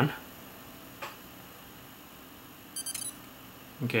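Sony U30 digital camera firing its shutter: a quick burst of short, high electronic beeps near the end as it takes a picture, with a faint click about a second in.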